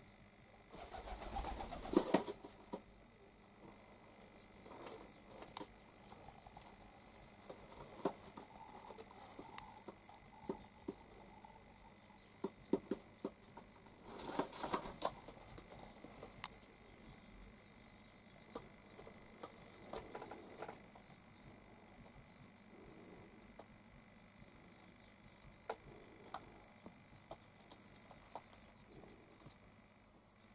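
Feral pigeons loose in a small room: soft cooing with scattered taps and clicks, and two brief rustling bursts, one about a second in and one near the middle.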